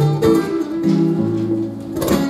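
Two acoustic guitars playing an instrumental passage, plucked notes ringing on and changing a few times.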